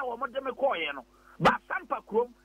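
A man talking over a telephone line, the voice thin and cut off at the top. About one and a half seconds in, a single sharp, short sound cuts through.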